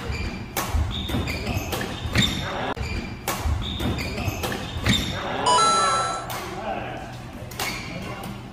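Badminton rally on a wooden indoor court: sharp cracks of rackets striking the shuttlecock and short shoe squeaks on the floor, echoing in the hall. A brief high ringing tone sounds about five and a half seconds in.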